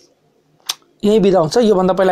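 A man speaking in Nepali, starting about a second in after a short pause broken by one brief click.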